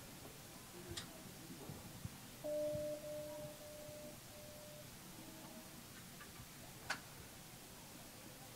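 Quiet room tone during a moment of silence, broken by two faint clicks, about a second in and near the end. In the middle a steady, even tone sounds for about a second and a half, followed by a couple of fainter short ones.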